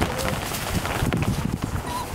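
Vizsla puppies scuffling and pawing through wood shavings while they play, a busy irregular rustling and patter of small knocks, with a brief high squeak near the end.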